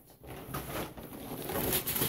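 Plastic packaging rustling and crinkling as it is handled, a dense crackling with a few sharper crackles near the end.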